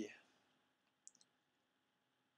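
Near silence, broken about a second in by a quick run of three faint, sharp clicks.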